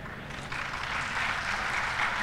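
Audience applauding, coming in about half a second in and growing louder.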